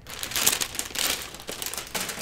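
Clear plastic bag crinkling as it is pulled open and off its contents by hand, loudest in the first second and trailing off into lighter crinkles.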